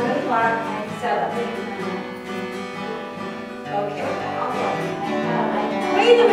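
Acoustic guitar being played, chords ringing out, with people talking over it.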